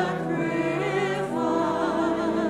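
Church choir singing a slow hymn, with voices holding long notes.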